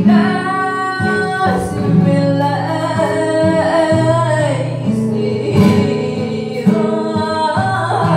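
Flamenco singing by a woman, with long held notes that bend in pitch, accompanied by a flamenco guitar.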